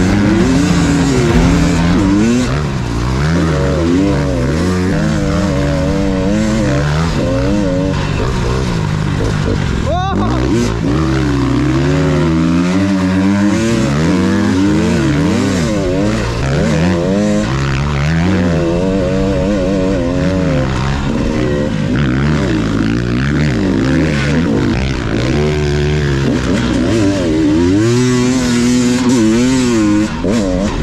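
Enduro dirt bike engine revving up and down over and over as it is ridden through soft sand, heard from the rider's own bike, with a second dirt bike running close by. There is one short knock about ten seconds in.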